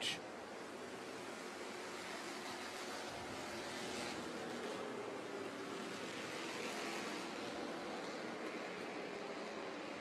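Bandolero race cars running laps at a distance: a steady, even noise with a faint engine hum underneath.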